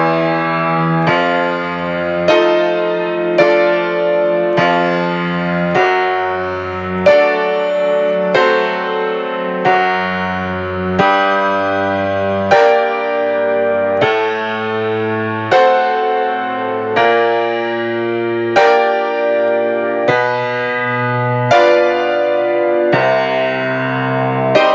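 Piano playing a G-minor chordal passage: low left-hand bass notes, each followed by repeated chords, in an even, steady rhythm.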